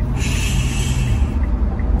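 A man shushing: one drawn-out "shhh" lasting about a second, over the steady low rumble of a car cabin.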